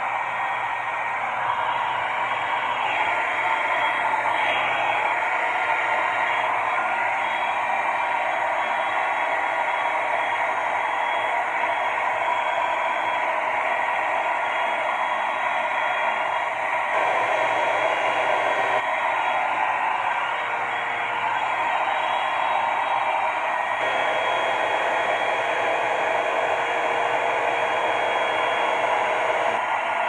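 Revlon One-Step hair dryer and volumizer (a hot-air brush) running steadily: a continuous rush of blown air with a fan-motor whine. Its tone changes a little about halfway through.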